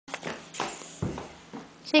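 A toddler's short, noisy puffs of breath through a tracheostomy tube, about five in two seconds, each a brief hiss that fades away. A woman starts to speak at the very end.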